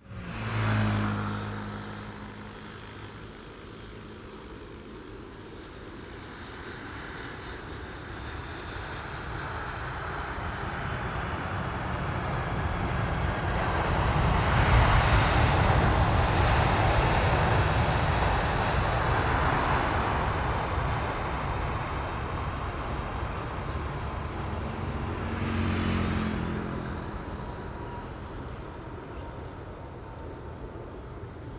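Jet engines of a Boeing 747 freighter as it rolls along the runway after landing. The roar builds to a peak about halfway through, then fades, with a second swell near the end.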